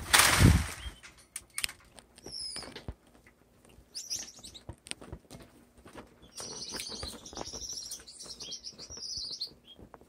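Loud flutter of wings as a small cage bird takes off and flies across the cage, followed by scattered light taps and clicks. A short high chirp comes a couple of seconds in, and from about six seconds in a small cage bird sings a high, twittering warble lasting about three seconds.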